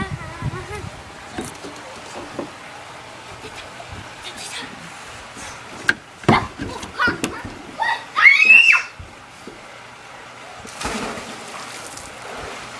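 Children's voices: short calls, then one loud drawn-out shout about eight seconds in that rises and falls in pitch, followed near the end by a brief rush of water-like noise.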